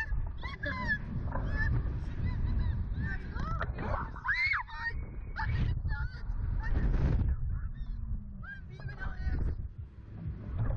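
Riders on a Slingshot reverse-bungee ride giving short high-pitched cries and laughter, the loudest about four seconds in, over steady wind rumble buffeting the on-board camera microphone as the capsule swings.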